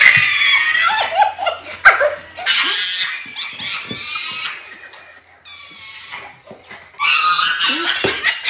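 A group of women laughing hard together, high-pitched and hysterical. The laughter dies down to a lull partway through, then breaks out loudly again near the end.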